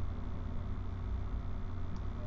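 Steady low hum with a faint hiss of background noise, with no distinct events.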